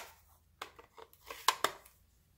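A quick run of about seven light plastic clicks and taps from a stamp ink pad being handled and opened, the loudest about a second and a half in.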